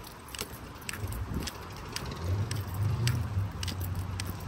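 Irregular light clicks and jingling as a chihuahua walks on a leash, with a low rumble underneath from about a second in.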